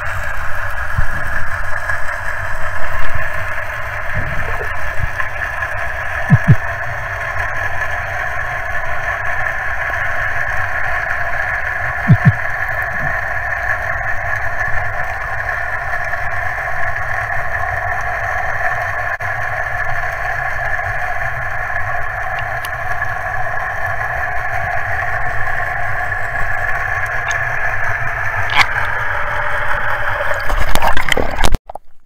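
Underwater recording of a steady engine drone from boat traffic carried through the water, holding an even pitch throughout, over a low rumble of water noise.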